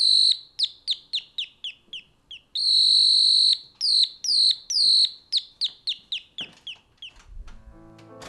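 Electronic doorbell playing a bird-song tune: a run of quick, high, falling chirps, about three a second, broken once by a longer held note. It then chirps on and stops about seven seconds in.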